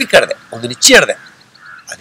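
A man speaking in Badaga in short separate phrases with brief pauses between them.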